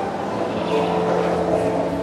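Steady hum and hiss of room noise carried through a public-address system, with a few faint held tones.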